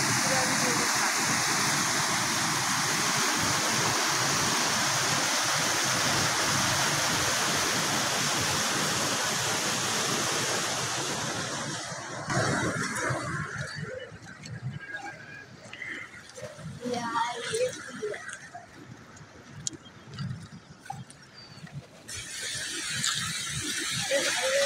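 Floodwater rushing loudly and steadily through the broken culvert pipes of a washed-out bridge. About twelve seconds in, the sound suddenly drops to a quieter background with people talking at a distance; a fainter rush returns near the end.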